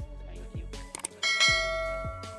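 Background music with a steady kick-drum beat, with the sound effects of a subscribe-button animation: a click near the start and another about a second in, then a bright notification-bell chime that rings out and fades.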